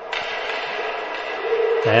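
Steady ice-arena background noise during a stoppage in play: a low, even murmur of crowd and rink sound. A voice comes in near the end.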